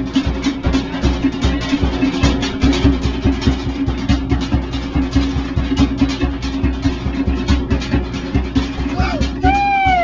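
Fast, driving drum music with a rapid, even beat over a steady low note, accompanying a fire knife dance. Near the end, a few high gliding shouts or whoops ring out.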